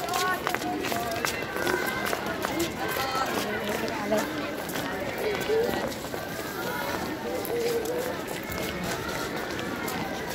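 Many children's voices chattering at once, with scuffing footsteps of schoolchildren walking over paving stones.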